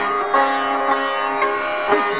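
Music: a single note from a sitar-like plucked string instrument, held steady for over a second.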